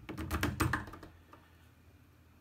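A quick run of small metallic clicks in the first second, fading after: a Turbo Decoder HU100 lock tool's blade being pushed into an Opel/Chevrolet ignition lock cylinder.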